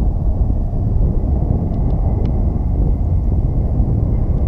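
Wind buffeting an action camera's microphone: a steady low rumble, with a few faint ticks in the middle.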